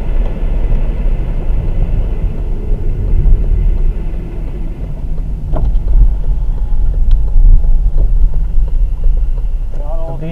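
Car-interior road noise from a dashcam: a deep, steady engine and tyre rumble as the car slows on a snow-covered road, with a few short knocks around the middle.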